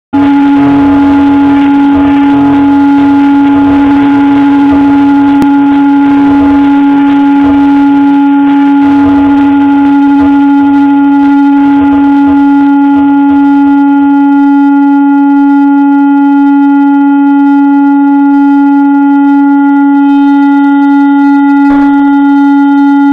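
Electric guitar left on its stand feeding back through its amplifier: one loud, steady held tone with overtones, unchanging in pitch. A low rumble underneath drops away about two-thirds of the way in.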